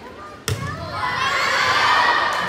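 A volleyball struck with one sharp smack about half a second in, followed by a crowd of children shouting and cheering that grows louder.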